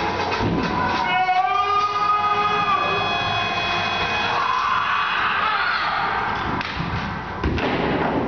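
Stage music and sound effects in a theatre: a wavering pitched sound about a second in settles into a held high note, followed by a rushing swell, with a sharp thump near the end.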